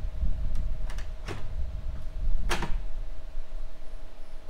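A steel suspension link bar handled and set down on a steel fabrication table: a few light knocks and clacks of metal, the loudest about two and a half seconds in, over a low background rumble.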